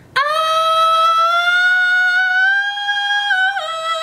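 A high sung 'ah' held for about three and a half seconds, drifting slowly up in pitch and stepping down near the end. It is an even head-voice note, air and muscle balanced, not breathy falsetto.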